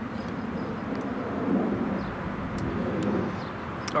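Steady low rumble of distant engine noise, swelling and easing slightly, with a few faint clicks.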